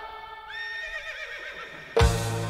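A horse whinnying inside a folk metal song: one wavering call that starts about half a second in and falls in pitch, over a hushed lull in the music.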